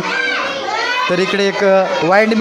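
Speech only: children's voices talking in a classroom.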